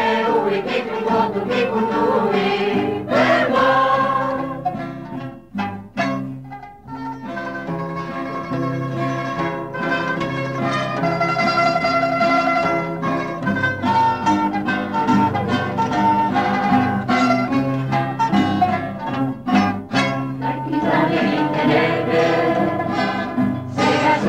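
A choir singing with a mandolin ensemble accompanying, with a brief drop in loudness about five to six seconds in before the music carries on.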